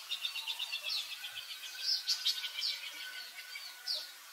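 Small birds chirping: a quick trill of high chirps in the first second and a half, then several sharp, downward-sliding high notes.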